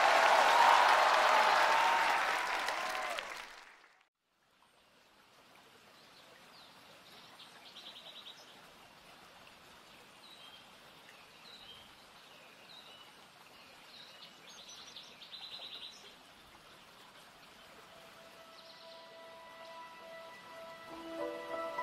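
Studio audience applauding and laughing, fading out after about three seconds to a brief silence. Then a faint ambience of birds chirping in short trills over flowing water, with soft sustained music notes coming in near the end.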